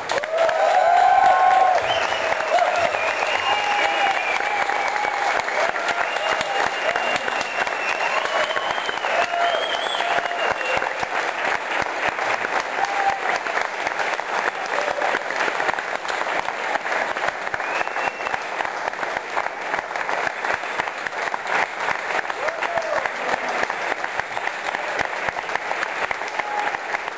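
Audience clapping and cheering at the end of a song, with shouts and whoops over the first ten seconds or so. It is loudest about a second in, and the clapping then goes on steadily.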